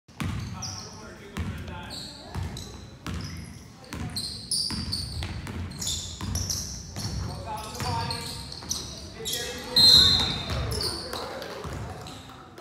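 Basketball being dribbled on a hardwood gym floor, with sneakers squeaking and players' and spectators' voices echoing in the hall. A short, loud whistle blows about ten seconds in.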